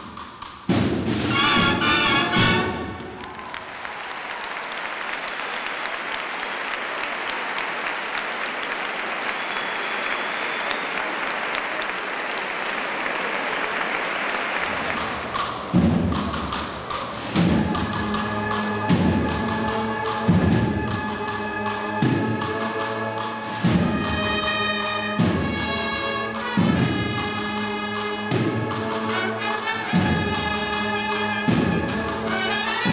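Cornet and drum band: a held brass chord ends, then a drum roll builds for about twelve seconds. The march then sets off with heavy drum strokes about every second and a half and held cornet notes over them.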